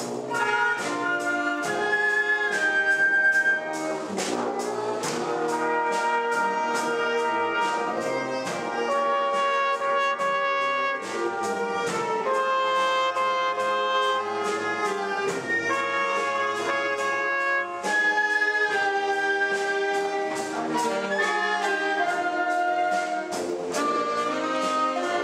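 Wind band playing together in rehearsal: flutes, clarinets, saxophone and brass in a moving tune over a steady beat.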